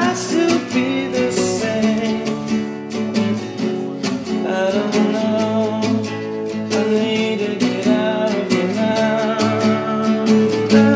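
Song backed by strummed acoustic guitar, with steady, regular strokes under sustained chords.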